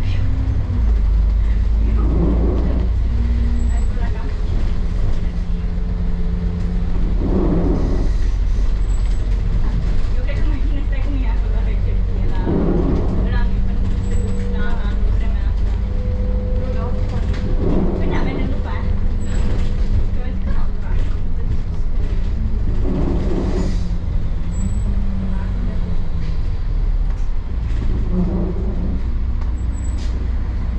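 Double-decker bus heard from inside while moving: a steady low rumble of engine and road noise, with the engine note rising and falling as the bus changes speed. A muffled swell of sound recurs about every five seconds.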